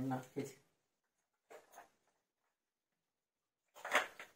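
A brief voiced sound from a person at the start. Then it is nearly silent, with two faint soft noises about a second and a half in and a short noisy sound just before the end.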